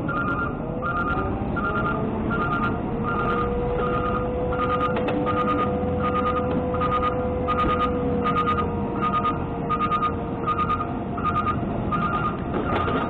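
Trash truck's D13 diesel engine running under load, with a whine that rises about half a second in and holds steady as the hydraulics lift the body to dump. A backup alarm beeps about twice a second throughout.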